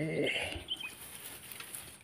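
Close rustling and handling noise from fingers working a fishing line and baited hook, fading over the two seconds, with a few short high chirps about half a second in.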